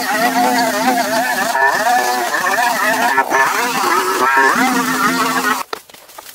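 Brush cutter engine running at high revs, its pitch wavering as the head is swung through dense weeds and grass. The sound breaks off suddenly near the end.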